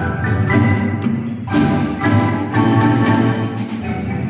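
Marimba ensemble playing a danzón in rhythm, many mallet notes struck together over a double-bass line, with accented strokes about once a second.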